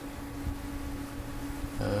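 Quiet room tone with a steady low hum. A drawn-out spoken 'uh' begins near the end.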